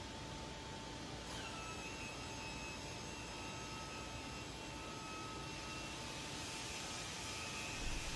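Faint steady hum over a hiss. A thin, higher whine joins about a second in.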